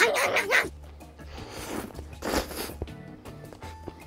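Background music under a man's short muffled vocal sound while he takes a bite of a burger. Two breathy bursts of noise follow in the middle, sounds of eating and breathing in.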